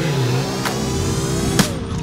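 A trials motorcycle engine revving up and down in short rises and falls, under background music with a steady beat.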